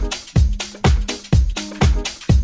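House music from a disco-house DJ mix: a steady four-on-the-floor kick drum, about two beats a second, with bright off-beat hi-hats and held bass and synth notes.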